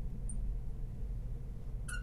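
Marker squeaking on a glass lightboard while writing: a short high squeak about a third of a second in and a brief squeak near the end, over a steady low room hum.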